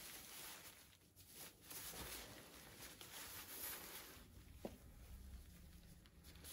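Near silence, with faint rustling of a thin disposable gown as gloved hands pull one of its sleeves off, and one small click about two-thirds of the way through.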